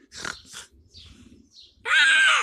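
A child's short laugh, then near the end a child imitating an animal: a loud, brief cry that rises and falls in pitch.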